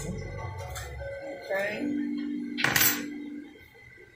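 A short clatter of kitchenware, a utensil against a pan or dish, about three quarters of the way in, over a faint background voice and music.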